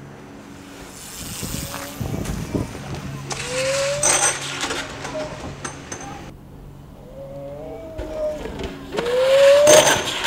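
On-location sound of BMX street riding over a steady low hum, with several short rising squeals or calls and noisy bursts. The loudest burst comes near the end as a rider crashes to the ground in a car park.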